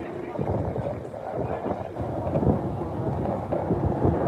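Wind rumbling on a handheld phone's microphone outdoors, uneven and low-pitched, with faint voices in the background.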